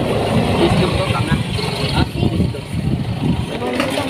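Busy street ambience: a vehicle engine running close by under background chatter of people talking, with a couple of short clicks.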